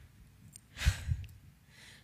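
A woman's short breathy sigh about a second in, close on a clip-on lapel microphone, with a low thump or two under it.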